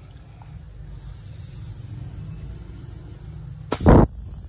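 Air blown by mouth through the vent pipe of a pressure-cooker lid to test whether it holds pressure: a low, steady rush of breath, ending in a short, loud puff shortly before the end.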